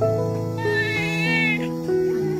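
Slow background music with long held notes. About half a second in, a newborn baby gives one short, wavering cry lasting about a second.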